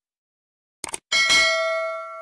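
Subscribe-button animation sound effect: two quick mouse clicks about a second in, then a notification bell ding that rings on and slowly fades.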